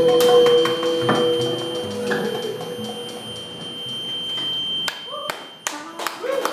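Live klezmer band ending a tune: a held final note fades out over about two seconds, leaving a thinner, quieter ring in the room with a few sharp knocks near the end.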